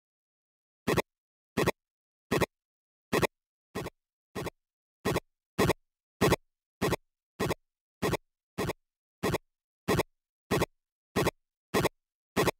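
A short, dry percussive drum sample played back from Ableton's Drum Rack, triggered over and over at about one and a half hits a second. Dead silence falls between the hits, which begin about a second in.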